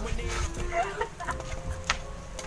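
Chickens clucking, a few short calls, with a sharp click near the end.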